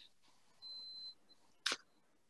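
A single short, sharp click, preceded by a faint, brief high-pitched whine over quiet room tone.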